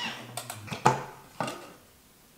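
A few sharp plastic clicks and knocks, the loudest a little under a second in, as a Thermomix lid is unlocked and lifted off the mixing bowl.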